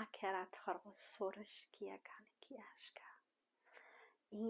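A woman's voice softly uttering flowing non-word light-language syllables, voiced at first and then turning breathy and whispered, with a short pause about three seconds in.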